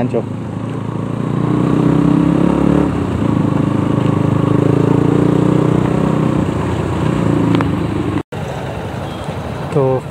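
Motorcycle engine running at steady revs while riding, with wind and road noise. About eight seconds in it cuts off abruptly and the sound carries on more quietly.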